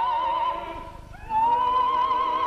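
Operatic soprano voice holding a high note with wide vibrato over orchestral accompaniment. The note fades away about half a second in, and a little after a second she takes up another long high note.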